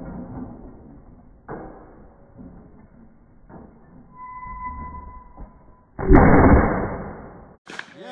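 A single shotgun shot about six seconds in, fired at a flying clay target, with its report dying away over the next second and a half. A fainter knock comes about a second and a half in.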